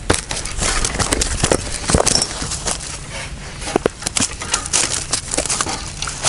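A small fish flapping and thrashing in dry grass and reed stalks: irregular rustling and slapping.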